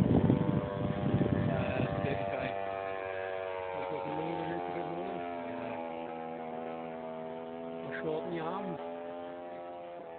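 Petrol engine of a large radio-controlled Extra aerobatic plane droning steadily in flight, slowly fading and drifting slightly lower in pitch. A loud rush of noise covers the first two seconds, and faint voices come in over the drone.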